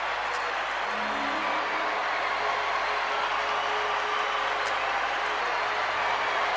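Steady background noise with a faint, brief low voice about a second in.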